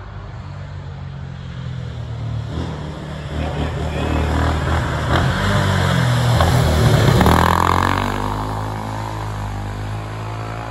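Vintage single-seater racing car's engine accelerating up a hill climb, rising in pitch and loudness as it approaches. It passes closest about seven seconds in, then the note drops as it pulls away.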